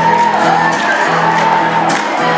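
Live acoustic guitar music, plucked strings with a held melody line above them that bends in pitch.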